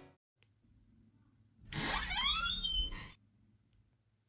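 A short added sound effect: several quick high whistling glides overlap, each rising and then falling, for about a second and a half starting halfway through.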